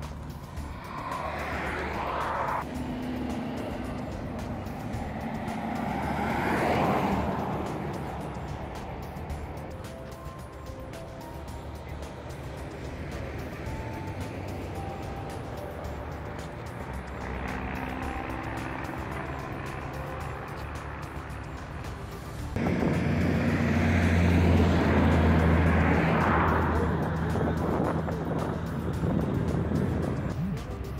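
Roadside highway traffic: vehicles passing by with swelling and fading whooshes, and a louder, deep engine hum that begins abruptly about three-quarters of the way through, over quiet background music.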